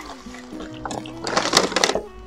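Soft instrumental background music with held notes, joined in the second half by a few short, sharp hissing noises.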